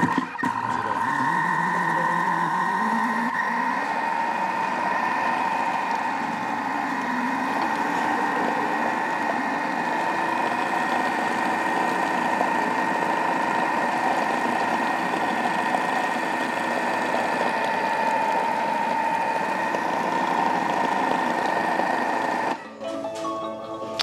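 Thermomix TM6 motor running at speed 3.5 with the butterfly whisk, churning strawberries and bananas into ice cream. It makes a steady whine that climbs in pitch over the first few seconds, then holds, and stops about 22 seconds in.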